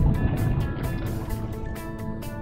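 Channel intro music with a steady beat. A low whoosh transition effect fades out over about the first second.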